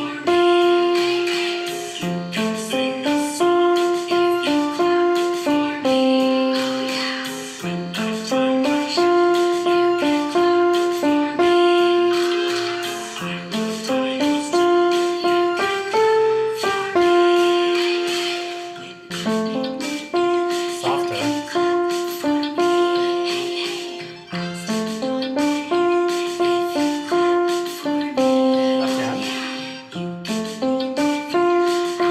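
Piano playing a simple beginner's melody along with a recorded accompaniment track. The notes come in a steady rhythm, in short repeating phrases that climb step by step.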